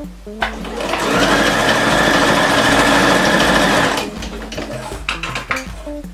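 Electric sewing machine running in one steady burst of stitching through jersey and elastic, starting about half a second in and stopping about four seconds in.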